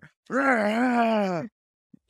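A man's voice giving one drawn-out, wordless groan lasting about a second, its pitch wavering slightly, a mock growl of the boy tearing into the clown.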